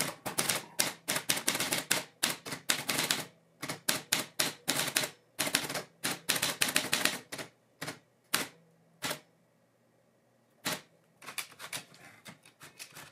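Manual typewriter typing: quick runs of key strikes, several a second, then a few scattered strikes and a pause of about a second and a half before fast typing starts again near the end.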